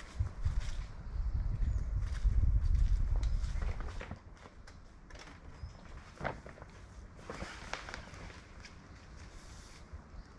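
Low, gusty wind rumble on the microphone for the first four seconds or so. After that comes a quieter stretch of scattered footsteps on grass and brief rustles of awning fabric being handled.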